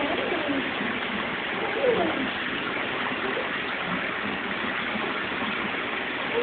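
Steady rushing background noise with faint, indistinct voices murmuring under it, one a little louder about two seconds in.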